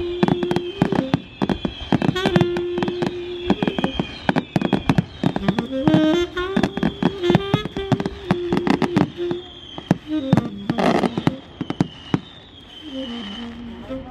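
Fireworks bursting and crackling in rapid succession, with music playing under the bangs; the bursts thin out near the end.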